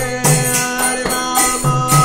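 Devotional kirtan: voices chanting held, sliding notes over a steady beat of jingling hand cymbals and drum.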